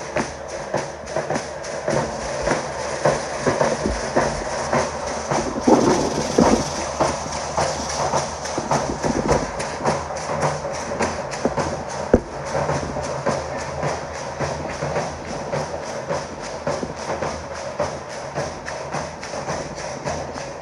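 Danza drums beating a fast, steady rhythm, overlaid with the clatter of the dancers' gourd rattles (sonajas) and the clack of arrows struck on their wooden bows. A single sharp crack stands out about twelve seconds in.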